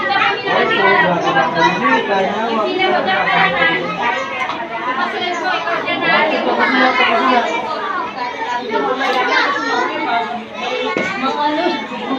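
Busy room chatter: many overlapping voices of young children and adults talking and calling out at once, with no single voice standing out.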